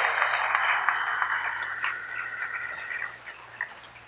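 Congregation applauding, the clapping thinning out and fading away over the few seconds.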